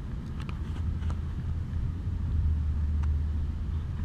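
Low, steady outdoor rumble that swells a little in the middle, with a few faint clicks.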